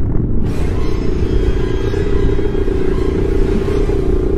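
Submarine engine sound effect: a steady low rumble with a constant drone as the small sub cruises underwater.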